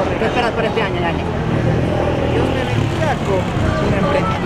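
People talking over the steady low rumble of street traffic and a stopped car's engine running.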